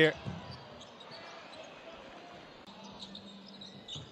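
Basketball arena ambience: a low, steady crowd murmur in a large hall, with faint scattered voices.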